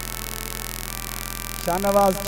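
Steady electrical hum from a sound system, with several held tones under it. Near the end a singer's voice comes in on a long, wavering note.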